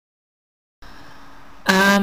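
Dead silence, then faint room hiss starting a little under a second in. Near the end comes a woman's short hummed voice sound, held on one pitch for about half a second.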